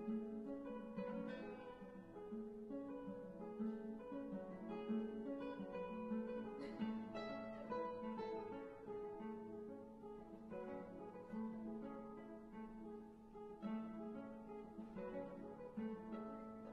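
Two classical guitars playing a duet, plucked notes over a low note that keeps recurring. One guitar has a string microtuned slightly less than a half step, which gives the piece its unusual sound.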